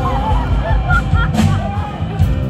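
Live band playing: bass and drums underneath, with short squiggling high-pitched gliding notes on top.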